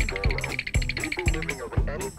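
Background music with a steady beat and a high, pulsing melody line.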